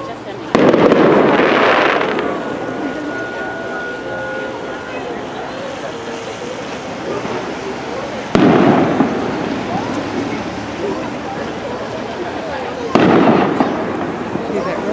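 Aerial firework shells bursting overhead: three loud reports, about half a second in, about eight seconds in and near the end, each dying away over a second or so.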